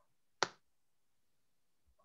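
A single short, sharp click about half a second in, with little else heard around it.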